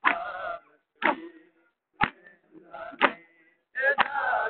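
A crowd of men chanting a noha in short phrases, punctuated by sharp beats about once a second, the steady rhythm of matam (mourners beating their chests).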